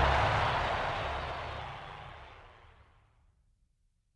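A low, noisy rumble from the soundtrack's closing sound effect, without any clear tones, fading away steadily over about three seconds into silence.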